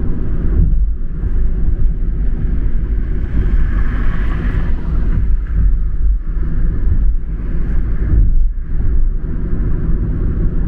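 Steady low road and engine rumble inside a car cruising at highway speed, with a swell of tyre and wind hiss about four seconds in.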